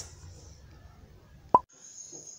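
Faint room noise, then a single sharp pop about three-quarters of the way through, where one recording is spliced to the next. A steady high-pitched tone follows.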